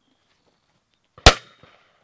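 A single shotgun shot fired at a clay target: one sharp crack just over a second in, with a short echo trailing off.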